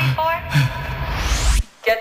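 Electronic dance music playing at high volume: short, chopped vocal stabs over a heavy bass line, with a rising noise sweep building up. Near the end everything cuts out for a fraction of a second before the vocal returns.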